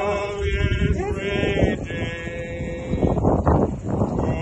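Small group of voices singing a hymn unaccompanied, with long wavering held notes. Wind gusts rumble on the phone's microphone, loudest about halfway in and again near the end.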